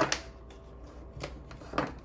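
Tarot cards being handled and shuffled: four short card sounds, the loudest right at the start and another near the end.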